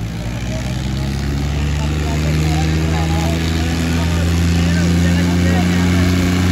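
Al-Ghazi 480 diesel tractor engines running hard under heavy load in a tractor tug-of-war, a steady drone that grows louder and slightly higher about two seconds in. Scattered crowd shouts sound over it.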